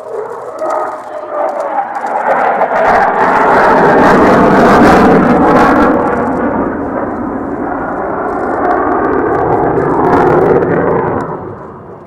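F-15J fighter's twin F100 turbofan engines as the jet flies past overhead: the noise swells quickly, is at its loudest with a crackling edge a few seconds in, stays loud, then fades near the end.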